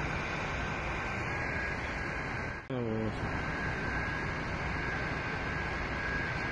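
Steady background noise of an outdoor phone recording, broken by a short drop about two and a half seconds in, with a brief voice just after it.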